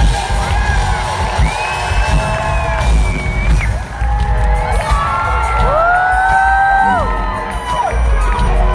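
Live pop band playing with a heavy bass beat, with the audience cheering and letting out long, high whoops over it twice.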